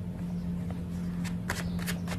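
Tarot cards being handled in the hand: a few light card clicks and rustles in the second half, over a steady low hum.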